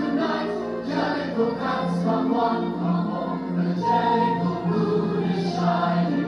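Stage-musical music: a chorus of voices singing over a band, with a held low note underneath.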